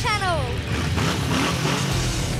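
A high falling cry in the first half second, then a motor trike's engine running and revving as it rides along.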